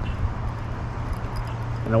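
Steady low outdoor background rumble with a faint even hiss, with no distinct events, before a man's voice comes in near the end.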